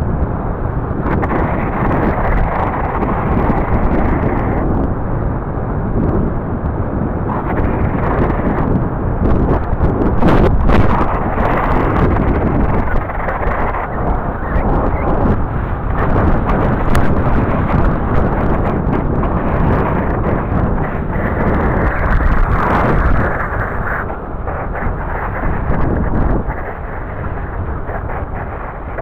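Heavy wind buffeting on a GoPro's microphone as a BMX bike runs fast downhill on asphalt: a loud, continuous rumbling rush with a few sharp clicks.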